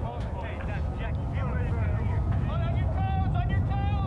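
Outdoor soccer field ambience: a steady low rumble with faint, distant voices calling out.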